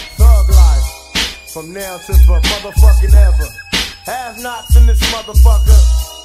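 Hip hop track: a rapped vocal over a heavy drum beat, deep kick drums with a sharp snare hit about every second and a quarter.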